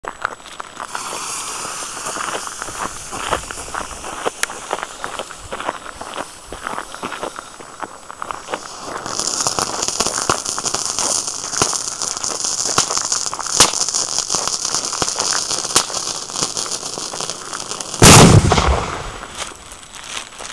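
A 60-gram Tuono Scoppiettante firecracker burning with a hiss and scattered crackles, the hiss growing louder about nine seconds in. Near the end it goes off with one loud bang that rings out for about a second.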